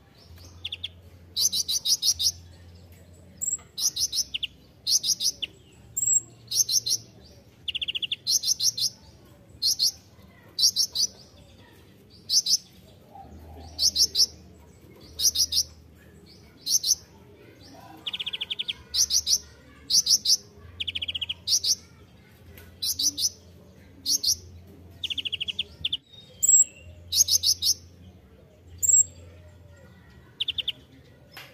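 A male van Hasselt's sunbird (kolibri ninja) singing in a steady, 'gacor' run. It gives short, high, rapidly trilled chirps, each a fraction of a second long, repeated about once a second.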